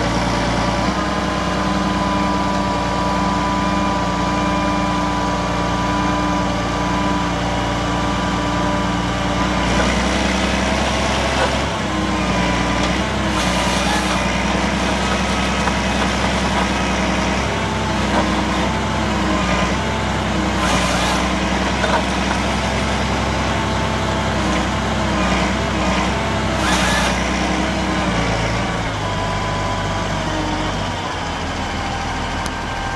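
Forestry tractor's diesel engine running steadily at working revs, with a steady whine. From about ten seconds in, the engine note wavers under the load of the hydraulic crane and harvester head, and three brief rushing noises are heard.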